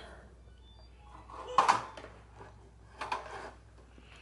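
Horizontal window blinds being opened, their slats rattling in two short clatters, a louder one about one and a half seconds in and a softer one about three seconds in.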